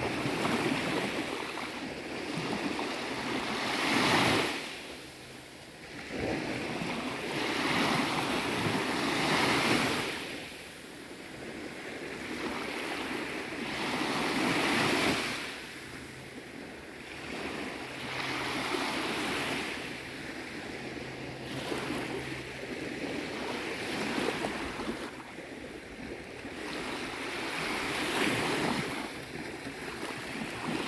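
Small, gentle sea waves washing on the shore, a hiss that swells and fades every few seconds.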